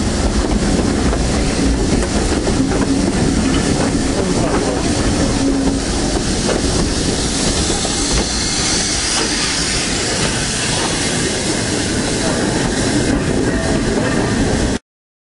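Coaches of a passing steam-hauled train running close by, wheels rumbling and clattering over the rail joints. Hissing grows louder around the middle as the GWR Manor class locomotive 7812 at the rear goes past.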